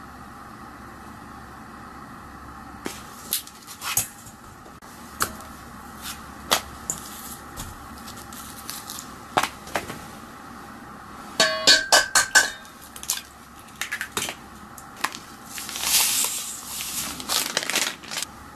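Kitchen handling sounds: scattered clicks and knocks as a plastic tray of minced meat is handled and the meat goes into a stainless steel mixing bowl, with a quick run of sharp metallic clinks that ring briefly about two-thirds in. Near the end, a rushing hiss as a large amount of white powdered seasoning is poured into the bowl.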